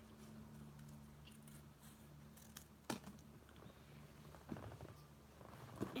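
Scissors cutting through a thin cardboard trading card: a few faint, sharp snips, the clearest about three seconds in, over a low steady hum.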